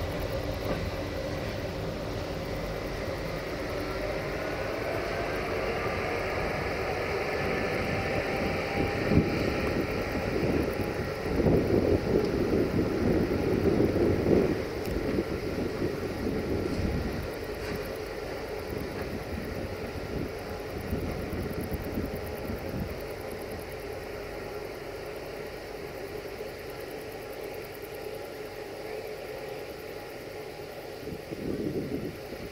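Electroputere 060-EA (LE5100) electric locomotive running slowly along the track, with a whine that rises in pitch over the first several seconds. A louder spell of rumbling follows for a few seconds near the middle, and the sound then eases off.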